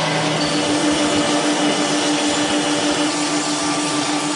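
Metalworking machine tool running steadily while cutting metal: an even mechanical hiss with a constant pitched hum.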